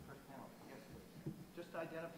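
Faint, indistinct voices, a person talking away from the microphone, growing a little louder near the end.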